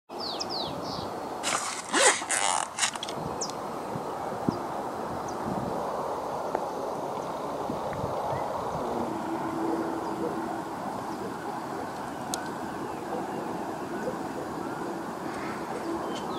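Steady outdoor background noise with a bird chirping a few times near the start. About two seconds in there is a short cluster of loud noise bursts.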